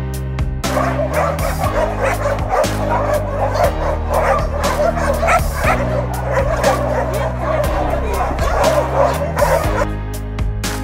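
Several shelter dogs barking at once, overlapping, starting just under a second in and stopping near the end, over background music.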